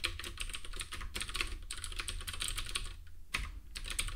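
Typing on a computer keyboard: a quick run of keystrokes that pauses briefly near the end, followed by a single key click.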